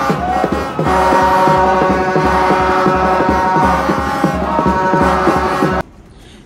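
Loud supporters' music in a stadium stand: several sustained horn tones held over a quick, steady drum beat, cutting off suddenly near the end.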